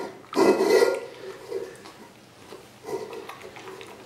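A bear cub eats from a stainless steel bowl. A loud burst of eating noise comes about half a second in, then softer bouts of chewing and slurping.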